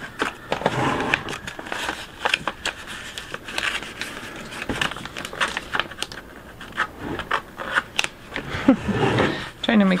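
Crinkling, rubbing and crackling of vinyl transfer tape and its paper backing being handled and peeled on a plastic bucket, in many short irregular clicks.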